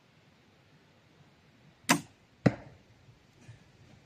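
A Doom Armageddon crossbow firing a 20-inch bolt: a sharp crack about two seconds in, then a second sharp knock about half a second later as the bolt strikes the target 33 metres away.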